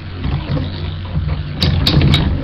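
Two Beyblade spinning tops whirring and grinding on a plastic stadium floor, a steady low hum. Near the end come a few sharp clicks as the tops strike each other.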